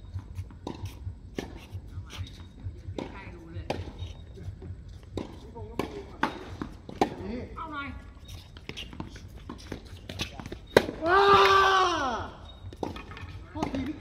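Tennis ball being struck by rackets and bouncing on a hard court, a string of sharp pocks through a rally, with players' voices and one loud drawn-out shout about eleven seconds in.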